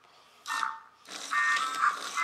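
Novie interactive robot toy's small speaker giving a short blip, then from about a second in a quick run of electronic beeps and chirps as it reacts to a hand gesture.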